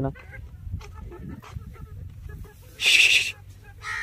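A chicken squawks once, briefly and harshly, about three seconds in, over faint yard noise.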